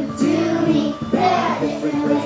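A children's song about transport playing, with children's voices singing over the backing music.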